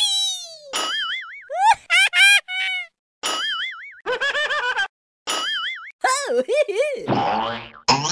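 A rapid string of cartoon sound effects: a falling whistle, then several wobbling boings and short pitch-bending toots one after another, ending in a noisy swoosh.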